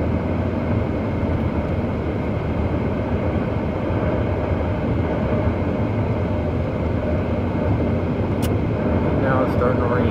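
Steady road and engine noise inside a moving car's cabin, with a single sharp click about eight and a half seconds in. A voice starts faintly near the end.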